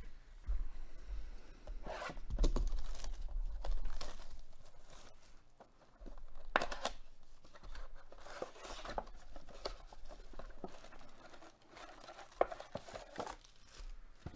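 Plastic shrink-wrap being torn off a cardboard trading-card box and crumpled, a series of irregular rips and crinkles, followed by the box being opened and foil card packs handled.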